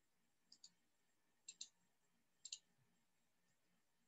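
Faint computer mouse clicks: three quick double-clicks about a second apart, against near silence.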